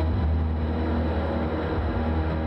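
Ambient live jazz: a loud, low rumbling drone comes in suddenly at the start under a dense, noisy wash of sound, taking over from quieter held tones.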